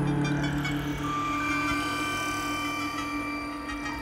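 Dark ambient electronic music: a steady low drone under sustained held tones, with higher held tones entering about a second in.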